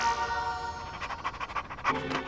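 Small cartoon dog panting quickly, starting about halfway through, over light background music.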